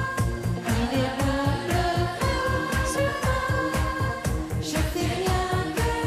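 Children's choir singing a French pop song over a backing track with a steady beat of about four pulses a second.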